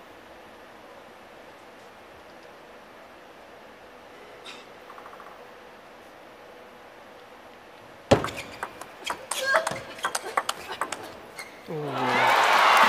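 Table tennis rally in a hushed arena: after several quiet seconds, the serve is struck about eight seconds in, followed by a quick run of sharp clicks of the plastic ball off the rubber-covered bats and the table for about three seconds.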